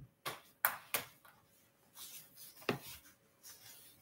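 Small objects being handled on a tabletop: a few sharp light taps and knocks, three close together near the start and another about two and a half seconds in, with some soft rustling between them.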